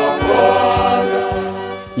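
Choral gospel music: a choir holding long notes over a steady beat, with a low drum hit about every half second.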